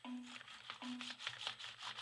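A phone rubbed back and forth over an Acer netbook's keyboard, the keys clicking and rattling in quick, irregular scrapes.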